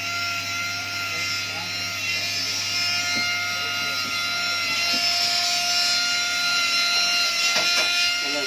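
Handheld jeweller's rotary tool running at a steady high whine while its small bit cuts a design into a gold piece.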